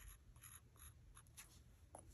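Faint, brief scratches of a fine paintbrush working paint onto a wooden earring blank, about half a dozen short strokes over near-silent room tone.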